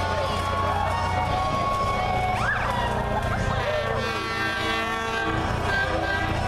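A fire engine's air horn and siren sounding in long held tones over a low engine rumble, with shouting voices from the crowd.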